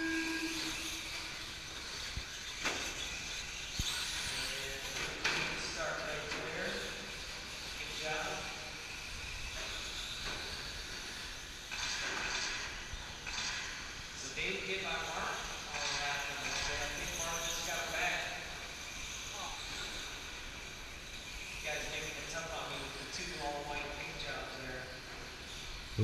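Electric 17.5-turn brushless short-course RC trucks racing on a dirt track: a steady high whine and hiss with a few sharp knocks, under indistinct talking.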